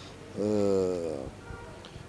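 A man's voice holding one drawn-out vowel, a hesitation sound, for about a second, sliding slightly down in pitch, then fading to a low hiss.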